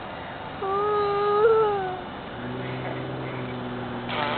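A young girl's voice holding one long, slightly wavering note for about a second and a half, rising a little at its end. Afterwards the steady low hum of the moving car carries on.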